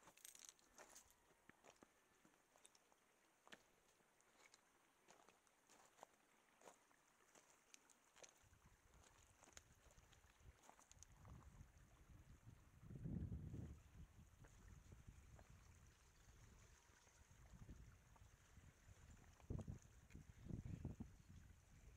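Near silence outdoors, broken by faint scattered clicks. From about eight seconds in, low wind rumble on the camera's microphone comes in, swelling most strongly around thirteen seconds.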